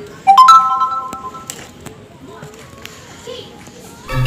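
An electronic chime: three steady notes entering in quick rising succession about a third of a second in, held together for about a second and then dying away. It is followed by a few faint clicks.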